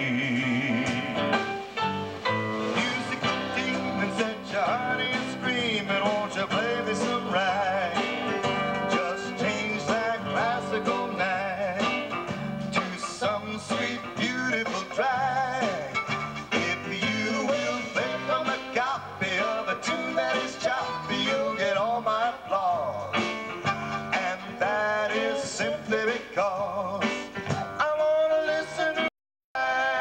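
Live band playing an instrumental break, with guitars, bass and drums under a keyboard taking the melody. The sound cuts out for a moment near the end.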